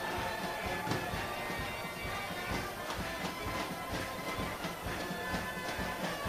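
Music from a stadium crowd: a steady droning horn-like tone over a drumbeat, heard at a moderate level with no commentary over it.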